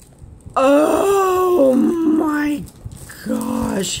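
A woman's drawn-out, wordless exclamations of delight, two long gliding vocal sounds with a short pause between them.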